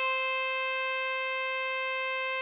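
Ten-hole diatonic harmonica holding a single steady blow note on hole 4 (C5).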